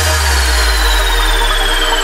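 Electronic backing music in which the beat drops out, leaving a held deep bass note and a high synth tone that slides slowly down in pitch. The bass fades near the end.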